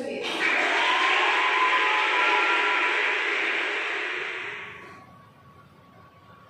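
Crowd applause with some cheering, starting at once and fading out after about four and a half seconds.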